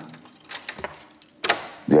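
A bunch of keys jangling at a door, in short metallic clicks and jingles about half a second in and again around a second and a half.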